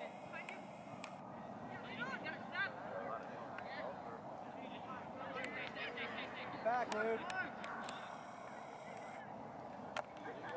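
Distant shouts and calls from youth soccer players across the field, heard in clusters about two seconds in and again around seven seconds in, over steady outdoor background noise, with a few short sharp knocks.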